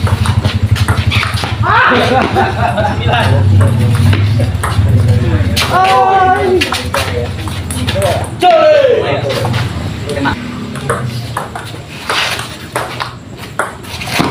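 Table tennis ball knocking back and forth between rubber paddles and the table in a rally, a run of sharp clicks, over voices and a low steady hum.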